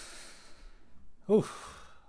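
A man's long breathy sigh into the microphone, followed about a second later by a short, falling "oh" that trails off into breath.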